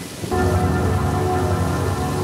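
Rain falling steadily, joined about a third of a second in by a low, sustained music chord that becomes the loudest sound.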